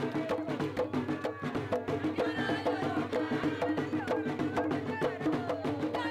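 Panamanian tamborito music: voices singing over drums and sharp percussion strikes in a quick, steady beat.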